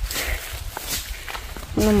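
Footsteps through dry grass and soil on a hillside. A person's voice starts near the end.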